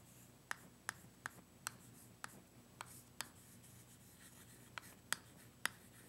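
Chalk on a chalkboard as a line of math is written: a faint series of short, sharp taps and clicks, irregularly spaced, as each stroke lands.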